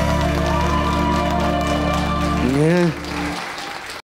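Saxophone with a backing track holding the final note and chord of a song, which stops about two and a half seconds in. A short rising-and-falling voice follows, then applause that fades out.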